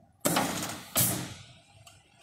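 Mechanical punch press cycling under two-hand palm-button control during its reference cycle: two sharp bursts of hissing noise about three quarters of a second apart, each fading away quickly, as the press runs and then stops.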